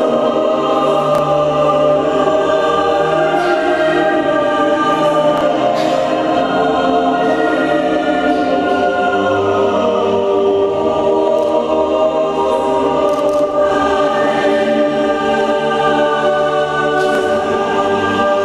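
Children's choir singing in long, held notes at a steady level.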